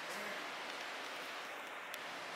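Steady hiss of background room noise, with a single faint click near the end.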